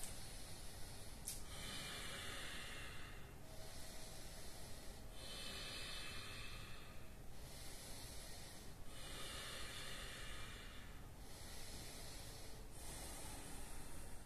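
A person's slow, deep, audible breathing, a soft hiss that swells and fades as inhales and exhales of about one and a half to two seconds each alternate, about four full breaths in all.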